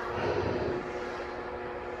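Steady low hum and hiss of room noise, with no distinct event.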